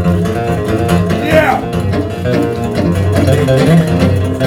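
Instrumental break in a live country duo: an electric guitar picks a lead line over a strummed acoustic guitar, with a note that slides down in pitch about a second and a half in.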